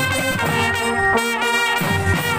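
Marching drum band playing: trumpets close by sound a tune of held notes over marching drums.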